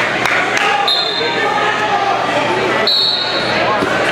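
Two short, high whistle blasts, the second one longer, about two seconds apart, typical of a referee's whistle, over the steady chatter of a crowd in a large gym hall. A few dull thuds from the wrestling mat.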